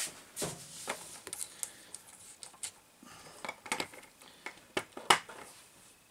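Scattered light clicks, knocks and rubbing as a large rubber-tyred wheel is handled and fitted onto a 1/8-scale RC monster truck.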